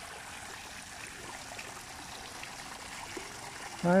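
A thin jet of water from a stone elephant-statue fountain pouring and splashing steadily onto its wet stone basin, a continuous trickling.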